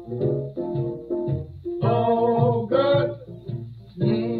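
A 1944 blues record played from a 78 rpm shellac disc: a small band of guitar, piano, string bass and drums in an instrumental passage with plucked guitar notes to the fore. A fuller, brighter chord or phrase comes about halfway through. The sound is narrow and dull, with nothing above the upper mids.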